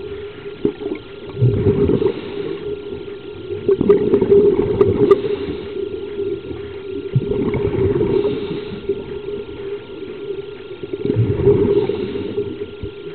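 Scuba regulator breathing heard underwater: exhaled bubbles gurgle in swells about every three to four seconds over a steady low drone.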